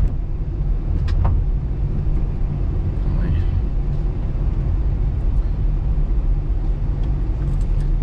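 A car being driven, heard from inside the cabin: a steady low rumble of engine and road noise, with a couple of faint ticks about a second in.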